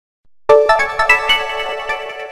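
Samsung mobile phone startup jingle: after about half a second of silence, a short bright chime melody of quick notes stepping upward, ringing on as it fades.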